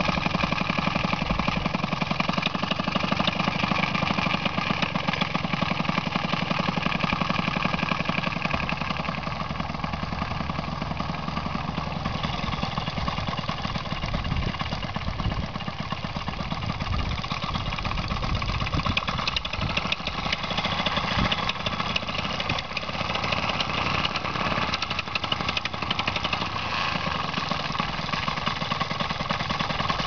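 Paramotor engine idling, a steady rapid pulsing that eases slightly in level about ten seconds in.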